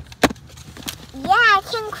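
Two sharp knocks about a quarter second apart, the first the louder, as a fist strikes a toy dinosaur egg to crack it open. A child's voice exclaims in the second half.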